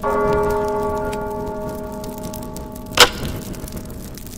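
Closing moments of the song's recording: a bell-like chime of several tones struck together at the start, ringing and slowly fading, cut by one sharp snap about three seconds in.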